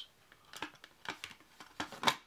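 Several faint plastic clicks and taps, the one near the end the sharpest, as a hard plastic game cover is pried off its plastic base.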